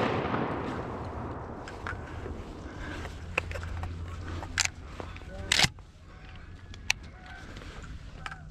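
Echo of a shotgun blast rolling away and fading in the first second, followed by a few scattered sharp cracks, the loudest about five and a half seconds in.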